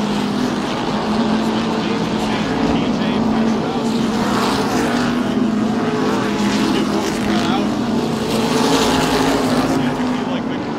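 A pack of SST modified race cars lapping an asphalt oval, their engines running hard together in a steady drone. It swells louder about four seconds in and again near the end as cars come by nearest.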